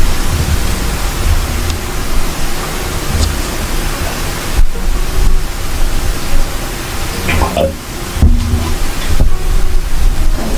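A steady, loud hiss of noise throughout, with a short vocal sound about seven and a half seconds in.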